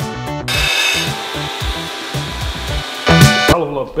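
Belt grinder running with a steel knife blank pressed against the belt, a steady grinding whine that starts about half a second in and gets louder briefly near the end. Background music with a beat plays underneath.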